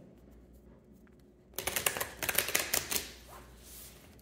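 A deck of oracle cards being shuffled by hand: a quick run of card-edge flicks and slaps that starts about a second and a half in and lasts about a second and a half.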